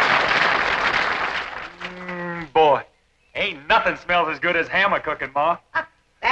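Soundtrack music fading away over the first second or two, then a drawn-out vocal call and a few seconds of a man talking.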